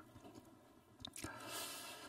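Near silence, with faint mouth clicks about a second in and then a soft breath in, picked up by a headset microphone just before the man starts speaking.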